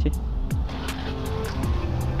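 A motorcycle engine pulling away and picking up speed, under background music with a steady beat.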